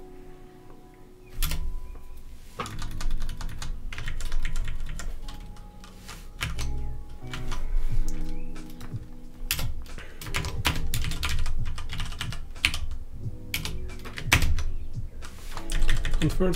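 Typing on a computer keyboard: irregular bursts of keystrokes, starting about a second and a half in, with music playing underneath.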